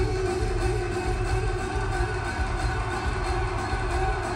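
Live band music from a concert stage: an instrumental passage with long held notes over a steady bass pulse, without vocals.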